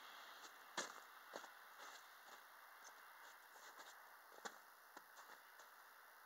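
Near silence broken by a few faint, scattered clicks and soft crunches, like footsteps in snow and hands handling gear near the cannons.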